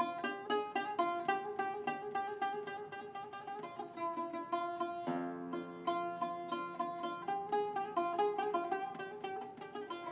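Solo oud, played live: a steady stream of quick plucked notes, with a strummed chord about five seconds in.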